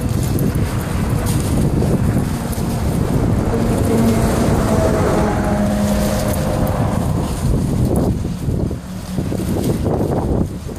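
Wind buffeting the microphone outdoors: a loud, low rumbling rush with no clear events.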